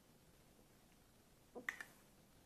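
Near silence, then a few quick small clicks near the end as a metal teaspoon goes into a plastic dessert cup.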